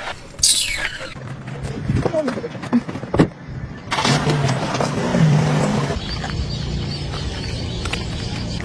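A car engine running as a car drives, with a short "Oh" from a voice about two seconds in.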